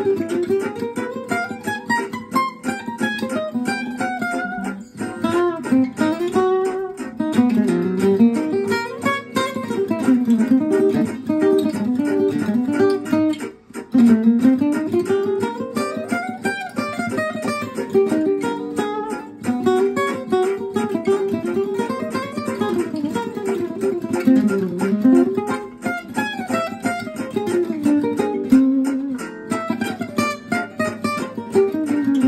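Acoustic archtop guitar playing a solo jazz improvisation in gypsy-jazz style, fast picked single-note runs that climb and fall over the chord changes, with a short break about halfway through.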